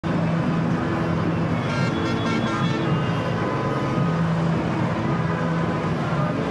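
Traffic-jam ambience: steady road noise of cars, with music playing under it. A brief higher-pitched tone comes in about two seconds in.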